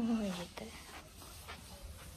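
A young girl's voice holding a drawn-out note that rises and then falls, fading out about half a second in. Faint handling noise with a couple of soft clicks follows.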